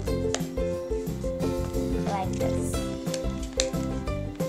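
Background music: a track of steady sustained tones over a regular beat, with a brief wavering voice-like line about two seconds in.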